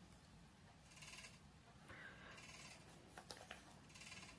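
Near silence with faint rustling and a few light clicks from knitting being handled.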